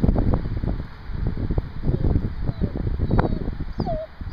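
A dog whining briefly near the end, a short high rising whimper followed by a falling whine, over a steady rumble of wind on the microphone.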